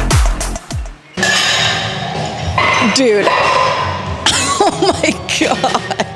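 Electronic dance music with a heavy, regular kick drum that cuts off about a second in. Then a woman's voice, laughing in short bursts, over a steady background noise.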